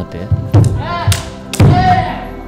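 Practice naginata striking padded bogu armour in a bout: several sharp thuds and knocks, with shouted kiai, one about a second in and one near the end.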